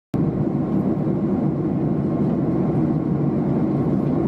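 Steady engine and airflow noise of an airliner cabin in flight, a low, even rumble that cuts in abruptly at the start.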